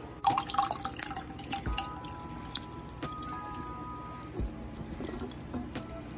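Canned chicken noodle soup pouring out of the can into a saucepan in wet splashes and drips, with a couple of dull thumps, over soft background music.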